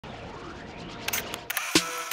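Logo-intro sound effects in the style of a camera shutter: a faint sweeping sound, then a few sharp clicks in the second half.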